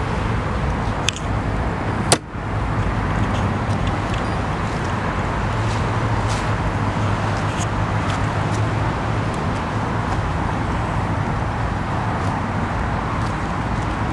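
Steady outdoor vehicle and traffic noise with a low hum, broken by a single sharp click about two seconds in.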